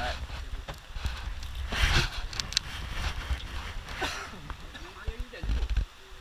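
Indistinct voices in the background over a steady low rumble, with short bursts of rustling noise about two and four seconds in.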